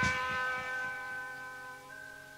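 A sustained, steady-pitched electric tone with several overtones, an amplified instrument or PA note left ringing, fading slowly, with a low thud at the start.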